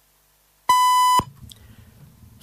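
Radio time signal pip: a single steady high beep lasting about half a second, the longer final pip that marks the exact time, 6:45. A faint low hum follows it.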